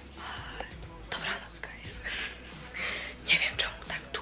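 A woman whispering close to the microphone, breathy syllables in short phrases, with quiet background music.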